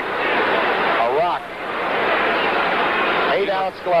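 Crowd noise from a packed boxing arena: a steady din of many spectators' voices. Short bits of speech rise over it about a second in and near the end.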